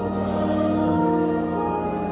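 Church organ playing slow, sustained chords over a deep bass, the harmony changing about halfway through.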